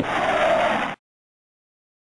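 A rushing noise with no clear pitch that cuts off suddenly about a second in, followed by dead silence.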